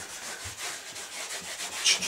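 Whiteboard being erased: quick back-and-forth rubbing strokes across the dry-erase surface.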